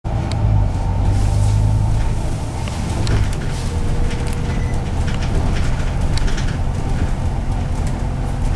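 Double-decker bus driving along, heard from inside on the upper deck: a steady low engine drone, heavier for the first three seconds, with short rattles and clicks from the bodywork.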